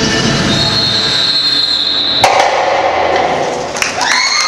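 Indoor percussion ensemble playing its closing bars: a loud sustained roll with a high ringing tone, then one big final hit a little over two seconds in that rings out. The audience starts cheering right at the end.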